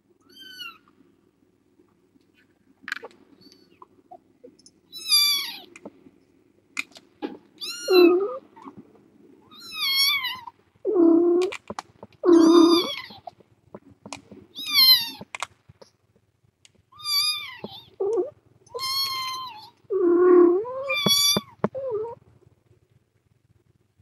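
Kittens meowing over and over: about a dozen thin, high-pitched cries, each under a second, with several lower, louder meows mixed in during the second half.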